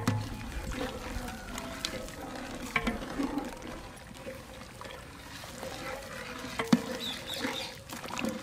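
Milk being stirred in a large aluminium pot with a long metal ladle: liquid sloshing and trickling, with a few sharp clinks of the ladle against the pot.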